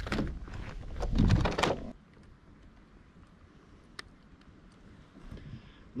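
Knocks and rubbing handling noise against a plastic fishing kayak for about the first two seconds as a small bass is let go over the side, then quiet with a single sharp click around four seconds in.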